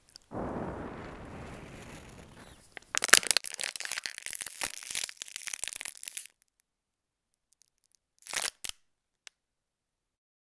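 Hand-made Foley sound effects: a rush of noise that starts suddenly and fades away over about two seconds. It is followed by about three seconds of loud crinkling, crunching and tearing, like material being crumpled, and a short crunch near the end.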